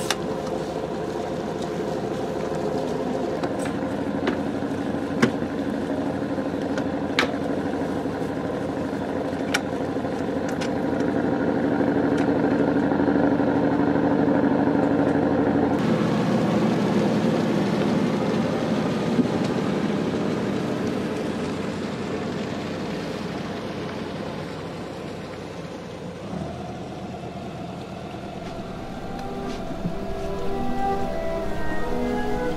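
A sailboat's inboard engine running steadily as the boat motors along, with a few sharp knocks in the first half. The engine sound shifts abruptly twice.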